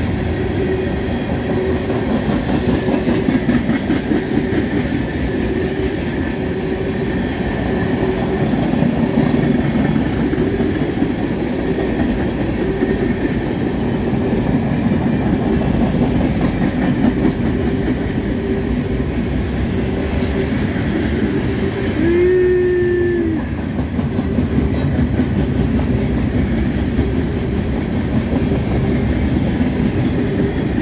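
Norfolk Southern mixed manifest freight cars rolling past: a steady rumble with the clickety-clack of wheels on the rails. Past the middle, a short horn-like tone sounds once for about a second.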